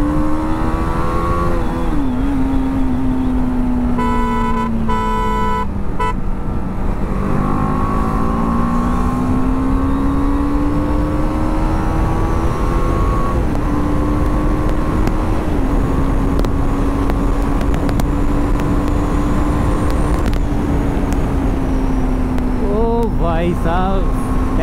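BMW G 310 R's single-cylinder engine pulled hard at full throttle, its pitch climbing and dropping back at each upshift as the bike accelerates to about 120 km/h, under heavy wind rush. A horn honks a few short times about four to six seconds in.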